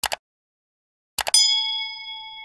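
Sound effects from a subscribe-button animation: a short click, then about a second later a couple of quick clicks and a bell-like ding that keeps ringing and slowly fades.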